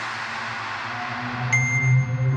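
Live electronic music played on music apps: a fading synth wash over a steady low bass tone, then a bright, high ringing tone that comes in sharply about a second and a half in.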